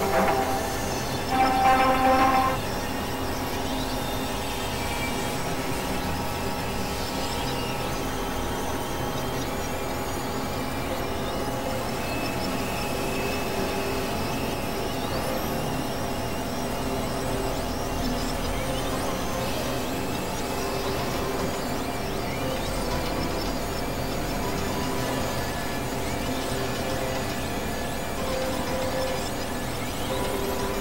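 Experimental electronic drone music: dense layers of sustained tones and noise that hold steady, with a louder, brighter pitched burst in the first couple of seconds.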